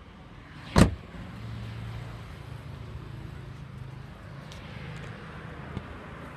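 A car door slams shut once, hard, about a second in. A steady low hum and a few faint ticks follow.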